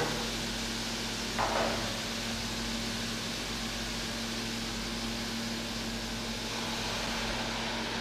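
A steady, fan-like hum and hiss runs throughout, with a brief soft sound about one and a half seconds in.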